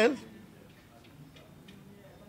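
A man's voice finishes a phrase, then a pause of low room tone with a few faint ticks.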